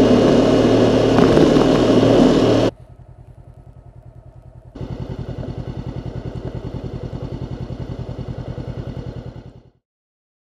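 Motorcycle engine and wind rush at road speed, cut off suddenly about three seconds in. Then a motorcycle engine runs at low revs with an even pulsing beat, growing louder about five seconds in as the bike comes closer, and fades out near the end.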